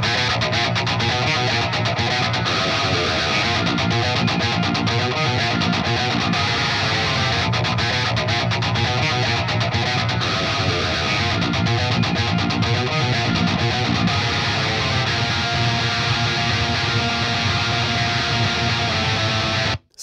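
Heavily distorted metal rhythm guitar playing a continuous riff: a raw DI track played through the Neural DSP Fortin Nameless amp-simulator plugin on its high-gain input, with an SM57 cab model and the tone controls just set for a more balanced sound. It cuts off abruptly near the end.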